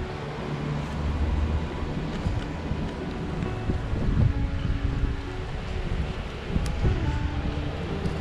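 Strong wind gusting on the microphone in a low rumble, with faint held musical notes underneath.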